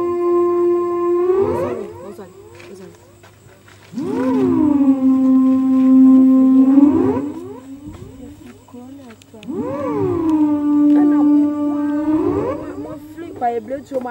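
Voices in long drawn-out calls, three of them about three seconds each: each slides down into one held note and glides back up at its end, with a short pause between calls.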